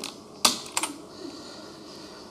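Clicking at a computer: one sharp click about half a second in, then two lighter clicks in quick succession.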